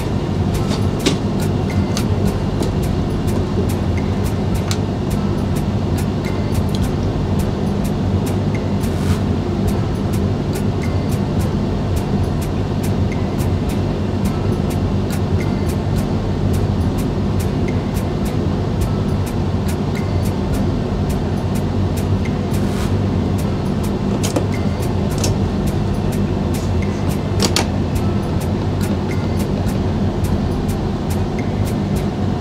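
Steady electrical hum inside the driver's cab of a Newag Impuls electric multiple unit as it pulls slowly out of the station, with frequent short sharp clicks and knocks.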